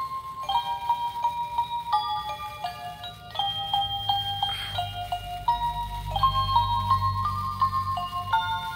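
Musical snow globe playing a tinkling, chime-like melody one note at a time, with a low hum joining in about halfway through.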